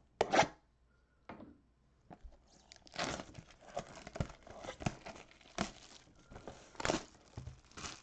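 Plastic shrink-wrap being torn and crinkled off a trading card mega box: one sharp rip just after the start, then a run of irregular rips and crinkles from about three seconds in.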